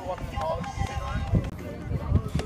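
Indistinct voices in the background, with a low uneven rumble underneath.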